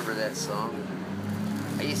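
Motorcycle engine running at low speed while riding in slow traffic: a steady low rumble that comes up about halfway through, under talk.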